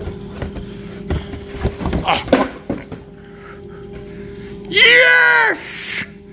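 A cardboard drink carton being handled and a can pulled from it: scattered rustles and light knocks for the first three seconds over a steady low hum. Near the end comes a loud, drawn-out vocal cry that rises and falls.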